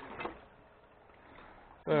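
Very faint running of a small 12 V DC gear motor driving a lever-arm diaphragm water pump, barely above the room noise.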